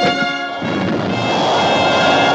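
Orchestral film score holding sustained chords. About half a second in, a rushing rocket-blast sound effect comes in under the music and grows louder: an escape capsule firing.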